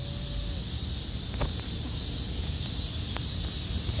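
Steady high-pitched drone of insects, with a low rumble on the microphone and two faint clicks about one and a half and three seconds in.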